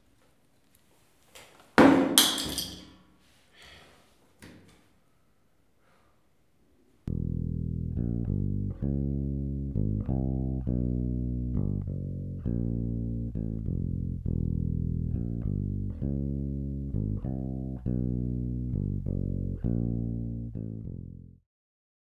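A sudden, very loud burst of noise about two seconds in that dies away over about a second, with two faint knocks after it. From about seven seconds a plucked bass guitar plays a repeating line of notes, stopping just before the end.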